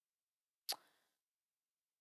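Near silence broken by a single short, sharp click about two-thirds of a second in.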